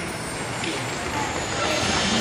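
A gap in the show music filled by a steady murmur of crowd chatter and open-air noise, with no single clear voice.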